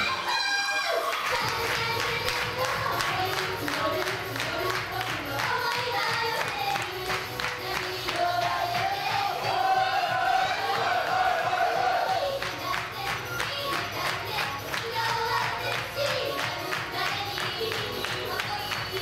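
Live idol-pop stage show. A backing track cuts off right at the start, then the audience cheers and claps in a steady rhythm while female singers sing into microphones over music.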